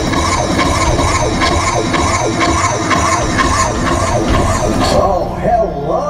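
Music with a steady beat, mixed with the chatter of a crowd of onlookers.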